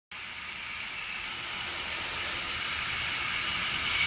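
Running engine of a Dodge Durango SUV, heard close up in the open engine bay as a steady hiss that grows slowly louder.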